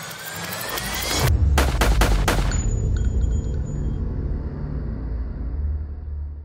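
Logo intro sting built from sound effects: a rising whoosh that builds for about a second, then a quick run of sharp, gunshot-like hits, then a deep boom whose rumble slowly fades out.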